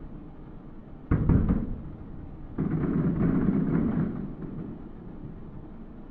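Fireworks shells bursting: a sudden boom about a second in, then a longer run of booms lasting about a second and a half.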